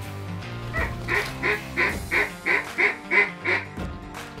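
A duck quacking in a quick run of about nine quacks, roughly three a second, growing louder and then fading at the end, over background music.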